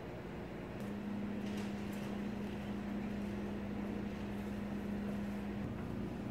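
Steady electrical hum and fan noise of a running K&S 4522 wire bonder. A low steady tone comes in about a second in and drops out near the end.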